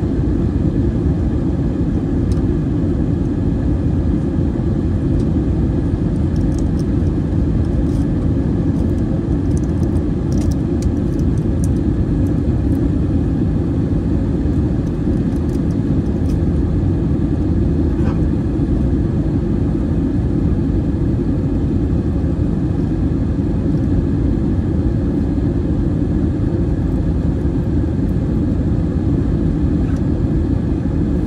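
Steady low rumble of engine and airflow noise inside the cabin of an Airbus A320 flying low on approach, with a few faint clicks in the middle.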